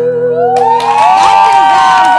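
The last strummed chord of an acoustic guitar rings out and fades. About half a second in, a small group of women break into loud whoops and cheers at the end of the song.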